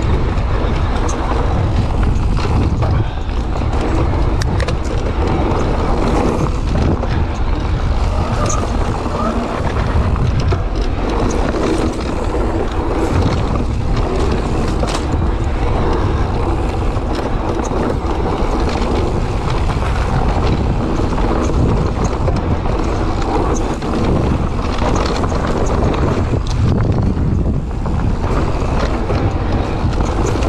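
Wind buffeting the microphone while an electric mountain bike rides a dirt singletrack, with steady tyre noise and frequent short clicks and rattles from the bike going over bumps.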